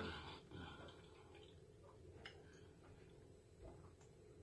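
Near silence, with a few faint clicks and ticks as water is drunk from a small plastic bottle.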